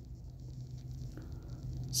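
Quiet room tone: a low steady hum with faint handling noise and no distinct events.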